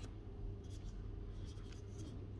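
A page of a paperback book being turned by hand: a few short papery rustles over a steady low room hum.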